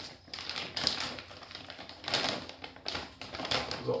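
Plastic groundbait bag being torn open by hand: crinkling and tearing of the plastic packaging in several short, irregular bursts.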